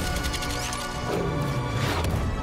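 Dramatic action film score playing under crash and impact sound effects, with a sharp hit at the start and another near the end.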